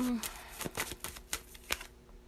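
Tarot cards being handled: a string of light, irregular clicks and snaps of card stock. A short falling vocal sound opens it.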